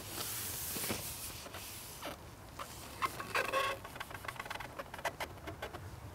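A pole cup of dead red maggots and micro pellets is swished about and tipped over the water: a soft hiss at first, then scattered light clicks and drips as the bait spreads into the swim.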